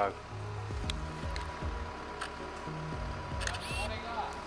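Background music with a stepping bass line, over which a few sharp clicks come from a Konica Genba Kantoku film camera's shutter and film wind.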